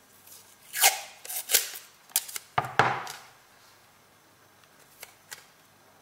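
Masking tape pulled off the roll and torn, in several short ripping pulls between about one and three seconds in, followed by a couple of faint taps as it is pressed down.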